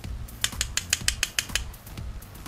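A quick run of about ten sharp clicks, some eight a second, lasting about a second, over faint background music with a steady beat.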